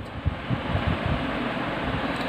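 Air buffeting the microphone: a steady rushing hiss with irregular low rumbling buffets.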